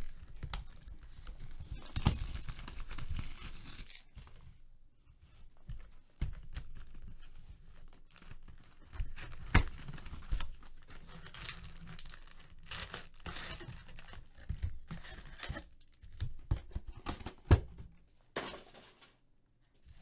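A sealed Panini Prizm No Huddle trading-card box being torn open and unpacked: plastic wrap and cardboard tearing, then foil card packs handled and crinkling, in irregular bursts with a few sharp taps.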